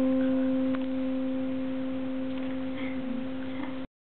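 A single piano note left ringing and slowly dying away, with a faint click about a second in; the sound cuts off abruptly near the end.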